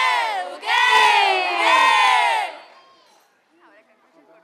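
A group of girls singing in unison into microphones, unaccompanied, holding long notes; the singing stops about two and a half seconds in.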